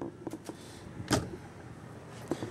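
Wooden interior door of a motorhome being handled, with one sharp click or knock about a second in and a few fainter ticks around it.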